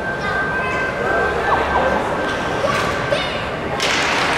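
Ice hockey rink ambience: a murmur of voices from spectators and players in a large arena, with a few sharp knocks of sticks on ice in the second half as the faceoff is taken. The noise swells just before the end as play starts.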